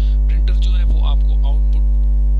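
Loud, steady electrical mains hum: a low buzz with a row of evenly spaced overtones, typical of interference picked up in a microphone or recording line.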